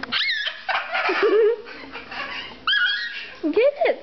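Children's high-pitched squeals and short vocal sounds, twice rising into shrill squeaks, with lower sliding voice sounds between them, as they shy away from handling a live mealworm.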